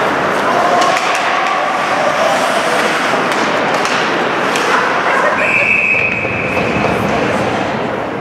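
Ice hockey play in a rink hall: sharp clacks of sticks and puck under spectators' shouting, then about five seconds in a referee's whistle blows one steady blast of over a second, stopping play as the goalie covers the puck.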